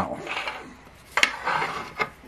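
Paper scratch-off tickets being slid and shuffled on a wooden tabletop, with one sharp tap a little past the middle.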